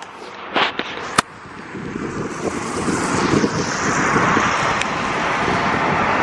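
Wind buffeting the microphone, swelling steadily louder over the last few seconds. A few sharp handling clicks come in the first second.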